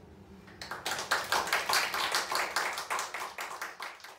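A small audience applauding, starting about half a second in and dying away near the end.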